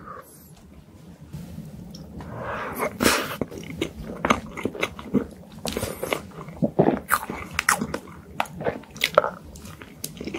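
Close-miked mouth sounds of eating soft chocolate lava cake: chewing with many quick, wet clicks and smacks, coming thick from about three seconds in.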